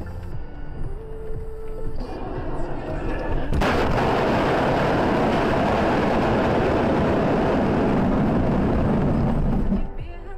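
Car crash picked up by a dashcam's microphone: a sudden loud noise about three and a half seconds in, which then runs on at an even loud level for about six seconds and cuts off just before the end.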